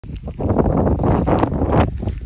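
Wind buffeting the microphone: loud, irregular low rumbling that builds about half a second in and eases off near the end.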